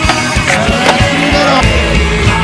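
Rock music with skateboard sounds over it: wheels rolling on concrete, and a sharp clack of the board just under a second in.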